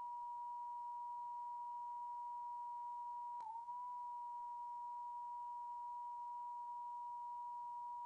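A steady, pure sine test tone, like a broadcast test tone, holding one pitch throughout. About three and a half seconds in there is a brief click, and the pitch dips slightly for a moment before settling back.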